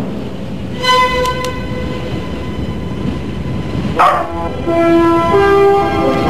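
Soundtrack of a television commercial. A steady rushing noise runs under a long, held, horn-like tone that starts about a second in. About four seconds in, a sudden swell leads into a run of held musical notes.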